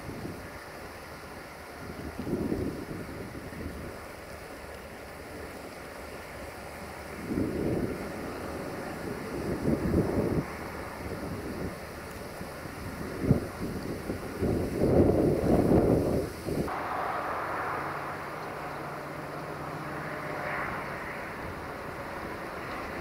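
Wind buffeting a microphone in irregular low rumbling gusts, the strongest about two-thirds of the way in. The sound then changes suddenly to a steadier hiss with a low hum beneath.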